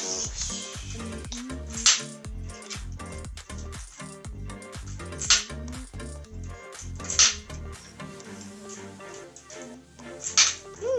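Background music runs throughout, while plastic Connect 4 discs are dropped into the plastic grid, clacking sharply four times: right at the start, about two seconds in, about five seconds in and about seven seconds in.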